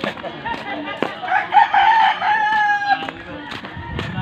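A rooster crowing once, starting about a second in and lasting nearly two seconds, ending in a long held note.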